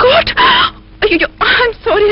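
A person's voice in several short outbursts, its pitch sliding up and down.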